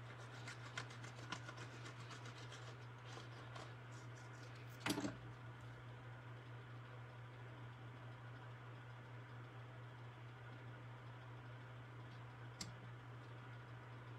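Quiet handling of paper and cardstock: faint clicks and rustles as liquid glue goes onto an embossed cardstock panel and the panel is laid on a card and pressed down. A brief louder noise comes about five seconds in and a single tick near the end, over a steady low hum.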